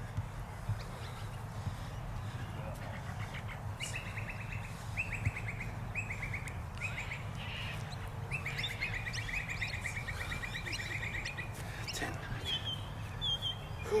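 A bird calling in rapid trills, a few short runs from about three seconds in and a longer run of about three seconds from eight seconds in, with a couple of short high chirps near the end, over a steady low rumble.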